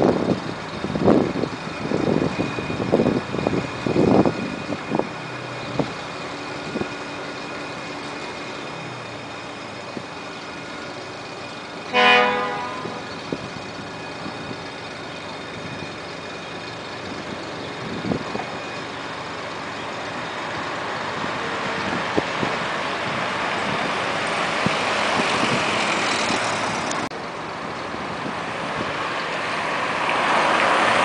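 Street traffic: a vehicle horn gives one short toot about twelve seconds in, the loudest sound here. A few low thumps come in the first five seconds, and in the last ten seconds the noise of approaching vehicles swells.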